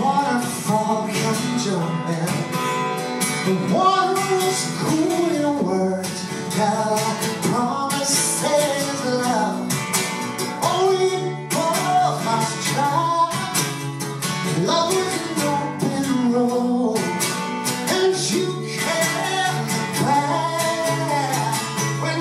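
A man singing over his own strummed acoustic guitar, a folk song played live.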